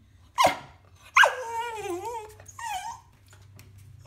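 Dog vocalising at a toy it is too scared to fetch from a tin tub: a short sharp bark about half a second in, then a longer cry with a wavering pitch, and a shorter cry near the end.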